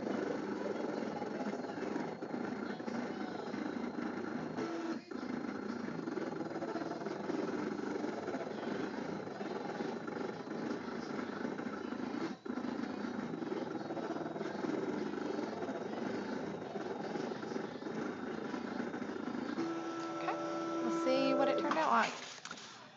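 Cricut Imagine cutting machine cutting paper: the blade carriage and mat-feed motors run with a steady mechanical whirr, broken by two brief pauses. Near the end it changes to a steadier pitched hum.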